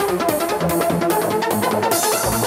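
Trance music from a DJ mix: a melodic synth line of short notes over off-beat hi-hats at about two and a half per second. The kick and bass drop out near the end.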